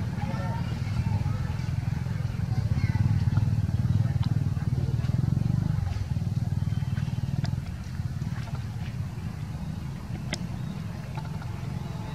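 A motor engine running with a low, steady rumble, loudest about halfway through and fading back about six seconds in, with a few faint clicks over it.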